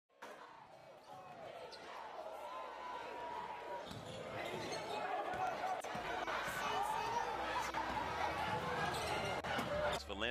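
Live game sound from a basketball game in a gymnasium: a ball dribbling on the hardwood amid the chatter of crowd voices, fading in and growing louder.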